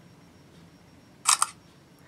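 Smartphone camera shutter sound: one quick double click about a second and a quarter in.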